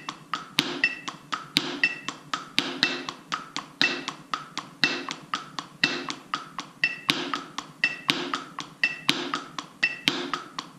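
Wooden drumsticks playing sixteenth notes on a rubber practice pad, about four strokes a second, with some strokes accented louder than the rest. A digital metronome beeps once a second under them, marking 60 beats a minute.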